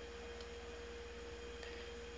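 A faint steady hum: one unchanging pure tone with a low buzz beneath it.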